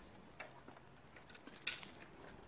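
Near silence, with a few faint clicks; one slightly louder click comes near the end.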